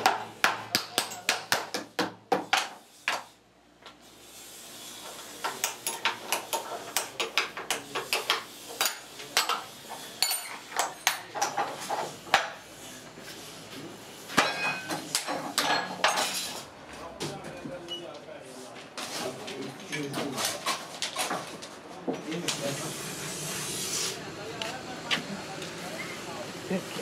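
Sharp metallic clinks and knocks, several in quick runs, from clamps and tools being worked on a metal jig that holds bent wooden net frames. Voices can be heard in the background.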